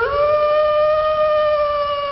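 A wolf howl: one long call that swells up in pitch at the start and then holds steady.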